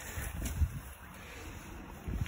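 Leaves and branches rustling and feet on the ground as someone pushes through dense brush, with wind rumbling on the phone's microphone. It is busiest in the first half second and quieter after that.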